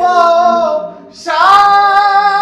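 A high voice singing a noha (Shia lament), holding one long note, pausing briefly about a second in, then holding another long note.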